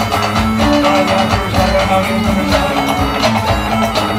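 Live band music with a steady, driving beat from a drum kit and percussion drums, with guitar; no singing in this stretch.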